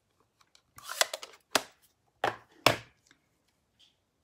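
Card stock and stamping tools handled on a craft desk: a short paper rustle, then four sharp clicks and taps, the last one with a dull knock on the tabletop.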